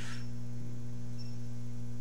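Steady electrical mains hum: a constant low drone with a few evenly spaced overtones above it.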